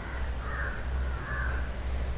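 A bird calling twice, faintly, over a steady low hum.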